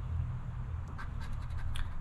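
A coin scratching the latex coating off a paper scratch-off lottery ticket, in a few short scraping strokes, most of them in the second half.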